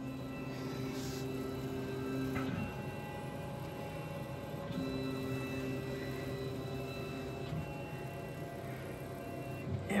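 A laser cutter's stepper motors whining as the head moves over the job to frame it. There are two runs of steady tones a few seconds each, with a pause of about two seconds between them, over a steady low hum.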